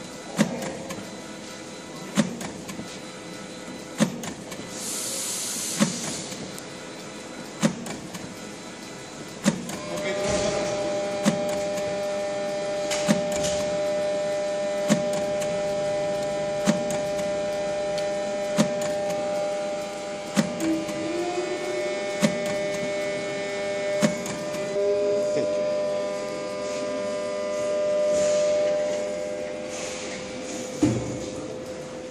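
Bag feeder, conveyor belt and thermal transfer overprinter running: a sharp click about every two seconds as the machine cycles through each bag. There is a brief hiss about five seconds in, and from about ten seconds in a steady motor whine of several tones runs under the clicks.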